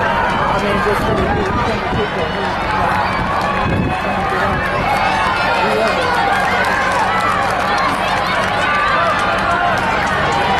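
Crowd of spectators in a stadium grandstand cheering and shouting for runners, many voices overlapping steadily, with no one voice standing out.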